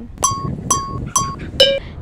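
Four short bell-like chime tones about half a second apart, each dying away quickly; the first three are at the same high pitch and the last is lower.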